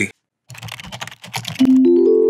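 A rapid run of typing-like clicks for about a second, then a steady sustained chord comes in near the end: the audio of an animated logo sting.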